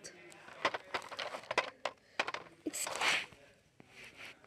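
Small plastic toys being handled and knocked about: a scatter of light clicks and knocks, with a short hissing rush about three seconds in.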